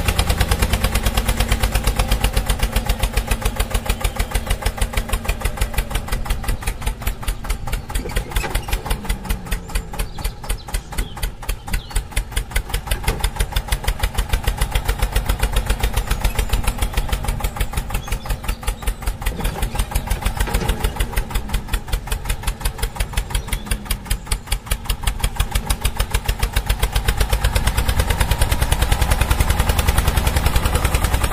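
Tractor engine sound, a diesel running with a fast, steady chug throughout.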